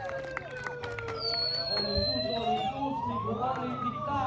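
Handheld megaphone's siren wailing. Its pitch slides slowly down, then rises for about two seconds, then starts falling again.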